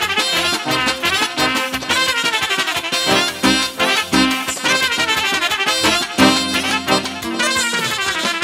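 Live wedding band playing an instrumental Romanian folk dance tune for a hora, led by brass, with a steady beat.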